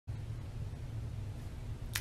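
Steady low-pitched room hum with nothing else over it, then a brief sharp sound at the very end as a woman's voice begins.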